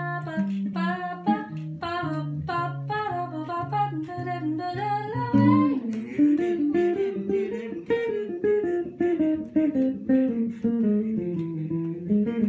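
Electric jazz guitar played solo, first chords over a walking bass line, then from about five seconds in a single-note melodic line, with wordless singing along with it.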